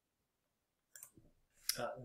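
Two short, faint clicks, about a second in and again near the end, from the computer as the presentation slide is advanced; otherwise near silence until a voice begins at the very end.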